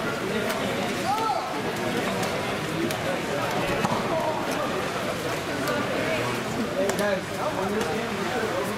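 Indistinct chatter of spectators, many voices overlapping at a steady level, with a few sharp taps mixed in.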